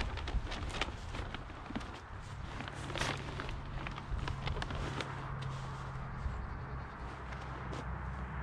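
Crackling and rustling as a person shifts on dry leaf litter and sits back into a nylon hammock draped with a wool blanket, with a sharper crackle about three seconds in.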